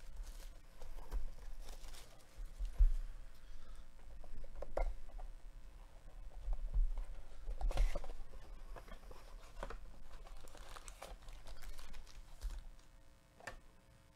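Cardboard trading-card hobby box being unwrapped and opened by hand: plastic wrap crinkling and tearing and the cardboard rustling, with scattered clicks and low handling knocks.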